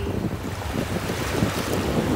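Shallow surf washing in over the sand at the water's edge, with wind buffeting the microphone.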